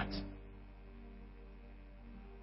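Soft background music with faint sustained notes, heard in a pause in the speech; the tail of a spoken word fades out right at the start.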